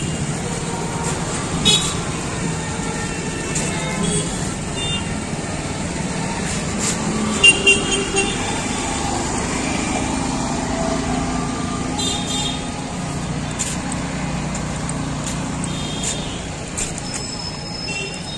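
Steady road traffic, with short high-pitched vehicle horn beeps several times, and voices in the background.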